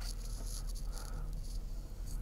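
Mercedes-Benz R129 500SL's V8 idling, a faint steady low hum heard from inside the cabin, running with its air filters removed. Light rustling on top.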